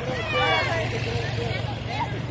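A military truck's engine running close by, a steady low hum under scattered shouting voices of a crowd.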